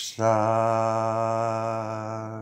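A man's unaccompanied voice holding one long, low sung note with a slight waver, just after a short hiss.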